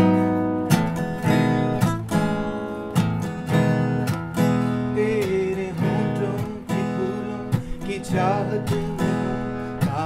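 Acoustic guitar strummed in a slow run of chords, the instrumental opening of a song.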